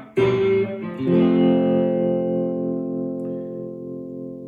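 Electric guitar, a Squier Bullet Mustang, playing a descending run of harmonized sixths, two notes at a time and slid down the neck toward open position; two pairs are struck early on, and the last pair is left to ring out and slowly fade.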